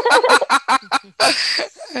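Hearty laughter from a woman in quick pulses, about eight a second, through the first second, then a breathy burst of laughter.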